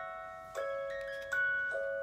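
Gentle background music: slow, bell-like plucked or struck notes ringing out and overlapping, a new note about every half second to three-quarters of a second.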